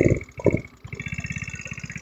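150cc GY6 scooter engine sputtering in a few uneven surges as it bogs, nearly cutting out about half a second in, then settling into a steady idle. The bogging comes from fuel starvation: the tank is low on gas.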